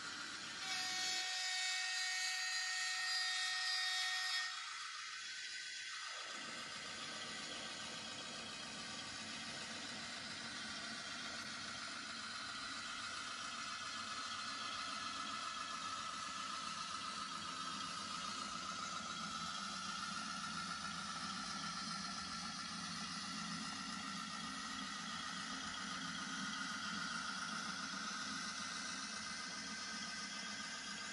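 N-gauge model locomotives running on the layout: the small electric motors give a steady, slightly wavering whine over the rolling of wheels on track. Near the start a louder stretch of about three and a half seconds carries several steady high tones.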